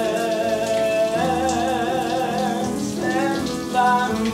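Shower spray running steadily, with held, wavering sung notes over it that change pitch about a second in and again near the end.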